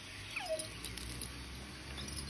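A dog gives one short whine that slides down in pitch about half a second in, followed by a few faint clinks, as of its tie-out chain.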